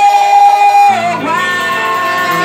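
Man singing a Portuguese worship song into a handheld microphone, loud, with instrumental accompaniment. He holds one long note, then after a short break a second, higher held note.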